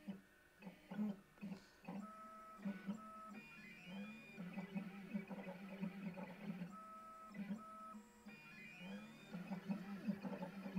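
Stepper motors of a small desktop CNC router driving its axes through a toolpath, whining at several pitches that rise and hold as each move speeds up and runs, in a pattern that repeats about every five seconds.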